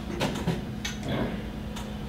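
Room tone: a steady low hum with a few faint ticks scattered through it.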